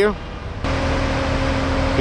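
Heavy construction machinery running at a building site: a steady engine hum over a low rumble and hiss, starting abruptly about two-thirds of a second in.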